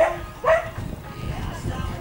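A dog barking twice in quick succession, two short yelps about half a second apart, each rising sharply in pitch.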